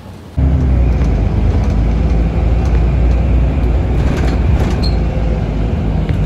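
Inside a moving city bus: a steady low engine and road rumble that starts suddenly about half a second in.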